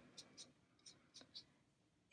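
Near silence, with a few faint, brief ticks of a watercolor brush working on paper.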